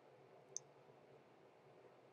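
Near-silent room tone with a single short, high click about half a second in: a stylus tapping a pen tablet while writing.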